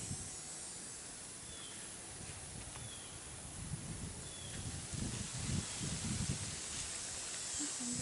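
Outdoor background noise: a steady hiss with three faint, short, high chirps in the first half, and low rumbling swells around the middle.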